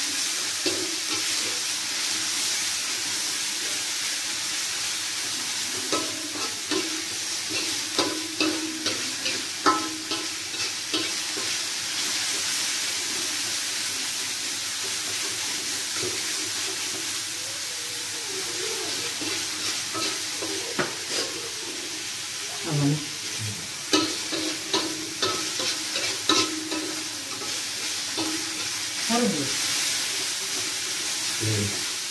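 Food frying in oil in a wok, a steady sizzling hiss, while a metal spatula stirs it, scraping and clicking against the pan in bursts about a quarter of the way in and again near the end.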